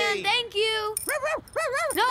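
A small dog's high-pitched yapping barks in a quick run, often in pairs, about three or four a second, starting a moment in.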